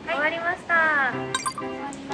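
Young women's voices calling out together with rising pitch, then a short bright clink-like sound effect about 1.4 s in as background music starts.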